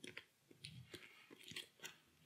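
Faint, light clicks and ticks of a hand of playing cards being drawn and squared in the hands, about half a dozen small snaps across two seconds.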